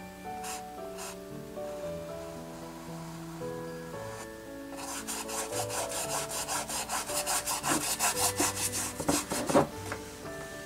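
An angle brush scrubbing acrylic paint onto a stretched canvas in quick, repeated strokes. The strokes start about halfway through and grow louder toward the end, over soft background music.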